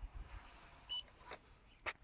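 A short, high electronic beep about a second in, between low bumps on the microphone at the start and a brief rustle near the end; no motors are running.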